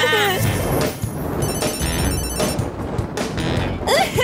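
Cartoon soundtrack: background music, with a character's voice trailing off in the first half-second and a dense run of sound effects after it.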